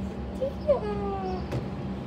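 African grey parrot giving one drawn-out call that slides down in pitch, about a second long, starting about two thirds of a second in.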